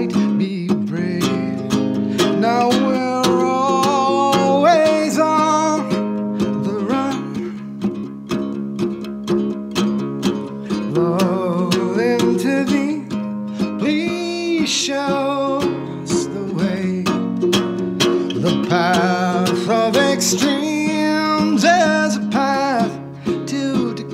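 Ukulele strummed in a steady, dense rhythm, with a man's voice singing long held, wavering notes over it in stretches.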